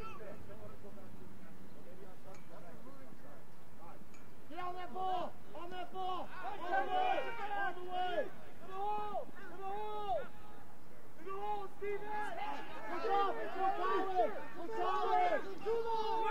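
Shouted calls from several voices on a lacrosse field, starting about four seconds in and coming one after another, over faint outdoor background noise.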